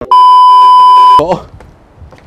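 Television colour-bar test tone: a loud, steady, high-pitched beep lasting about a second that cuts off abruptly, followed by a brief snatch of a voice.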